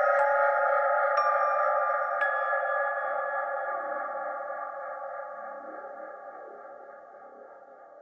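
Electronic ambient music: a held synthesizer chord with three pinging, bell-like notes about a second apart in the first few seconds, slowly fading out.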